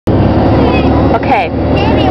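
Bus engine and road noise heard from inside the cabin while the bus drives along, loud and steady.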